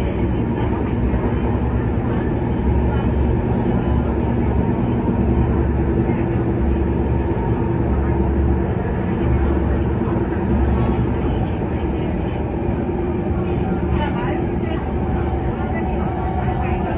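Running noise heard inside a Kinki Sharyo–Kawasaki MTR Tuen Ma line train car in motion: a steady rumble of wheels and running gear with a constant hum. A low throb swells and fades about once a second.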